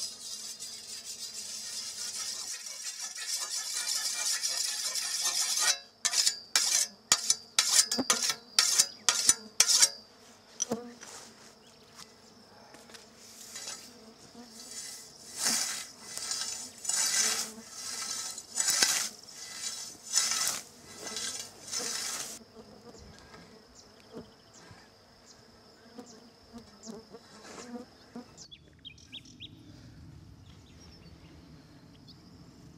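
A scythe being whetted: sharp strokes of a stone along the blade, about two a second, then a run of scythe swings swishing through tall grass, about one a second. A steady high insect buzz carries on underneath.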